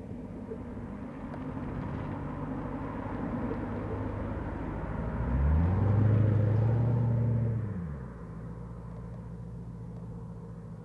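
1991 Chevrolet Corvette C4's 5.7-litre V8 running as the car drives by. About five seconds in the engine revs up under hard acceleration for two to three seconds, then eases off to a steady lower rumble as the car pulls away.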